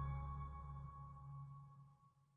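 The fading tail of a short logo jingle: several held ringing tones over a low hum, dying away steadily.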